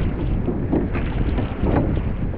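Wind rumbling on the microphone of a rowed surf boat at sea, with water rushing along the hull and the oars dipping about once a second.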